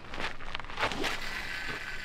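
Fishing rod cast: a swish of the rod in the first second, then line running off the reel with a faint thin whir that drifts slightly lower in pitch.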